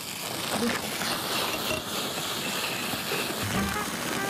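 Meat and vegetables frying in a pan, with a steady sizzle, under background music.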